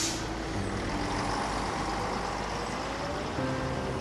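A city bus and street traffic running steadily, opening with a short hiss of air from the bus's air brakes. Soft piano music sits faintly underneath.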